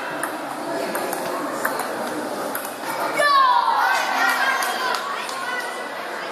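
Indistinct chatter echoing in a large sports hall, with a few light ping-pong ball clicks. About three seconds in comes a loud voice call that falls in pitch over about a second.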